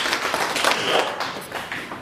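A small group of people applauding with dense hand claps that thin out and die away about a second and a half in.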